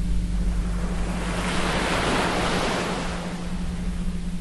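Small waves breaking and washing up a sandy shore, the wash swelling about halfway through and then easing off. A steady low 174 Hz tone hums underneath.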